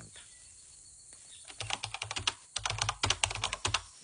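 Rapid crackling and rustling of leaves and dry leaf litter as someone pushes into a large clump of crinum lily, with low thumps among it. It starts about a second and a half in after a quiet moment.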